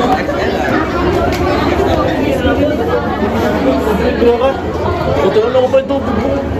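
Many people chattering at once, overlapping voices with no single speaker standing out: the steady babble of a crowd gathered in a large hall.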